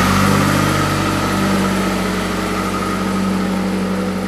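Ford Escort ZX2's 2.0-litre four-cylinder engine idling steadily, a low hum with a high whine over it, slowly fading.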